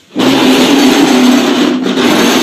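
Cloth rubbing and brushing against the phone's microphone as the phone is handled: a loud, harsh rustling noise that starts suddenly, with a brief dip near the end.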